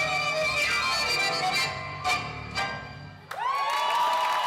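Recorded tango music with violin reaching its end, closing on two sharp accented chords about half a second apart. A moment later an audience breaks into cheering and shouting.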